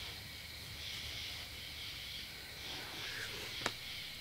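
Faint steady hiss of steam from a steam-bending box, with a single sharp click near the end.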